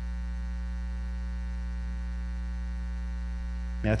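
Steady electrical mains hum from the sound system: a low drone with many evenly spaced overtones, unchanging throughout, with a spoken word just at the end.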